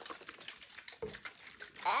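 A drink can and a bottle being shaken by hand, giving a faint, irregular patter of small clicks and knocks. A voice cries out near the end.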